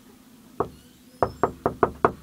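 Knocking on a door from the other side: a single knock, then after about half a second a quick run of four more knocks, about five a second.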